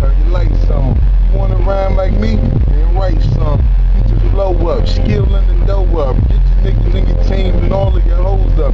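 A man's voice rapping in short phrases over a deep, steady bass beat playing in a car.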